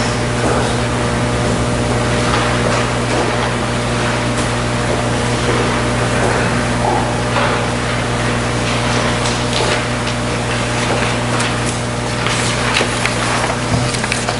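A steady low hum with an even hiss of noise, holding level throughout, with a few faint soft ticks.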